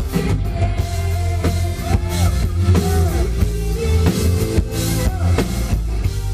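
Live band playing a pop-rock song, with drum kit and guitar over a steady low beat.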